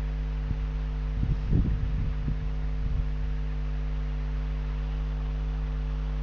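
Steady electrical mains hum with its overtones, picked up by the recording chain. A few soft low thumps come between about one and three seconds in.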